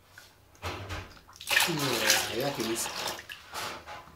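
Bath water splashing and sloshing in a tub as a toddler plays with a plastic cup, with a voice rising and falling in pitch over the splashing for about a second in the middle.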